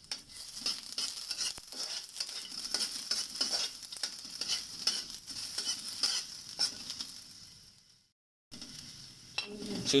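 Garlic cloves sizzling in hot oil in a steel wok while a metal spatula stirs and scrapes them, with many sharp clicks of the spatula against the pan. The sound fades and cuts out briefly about eight seconds in, then the sizzling resumes more quietly.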